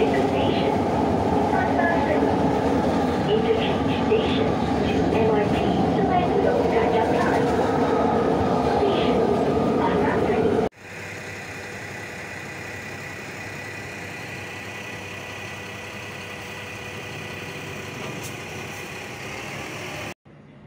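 Train running, heard from on board: a loud, steady rumble. About eleven seconds in it cuts off abruptly to a much quieter steady hum with a thin high whine.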